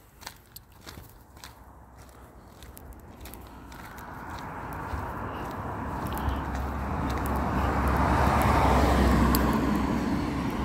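A car approaching on the road, its engine rumble and tyre noise building steadily from about four seconds in and loudest near the end.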